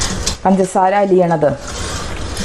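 A woman speaking for about a second in the middle, with a wooden spatula stirring strained beetroot liquid in a steel bowl heard as a soft noise before and after the words.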